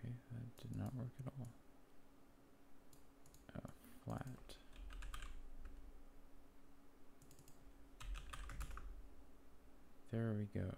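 Typing on a computer keyboard in three short bursts of key clicks, with pauses between them. A faint steady hum runs underneath.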